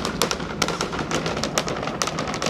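Rocket exhaust crackling from Starship's Super Heavy booster climbing on all 33 Raptor engines: a dense, irregular run of sharp cracks and pops over a steady rushing noise.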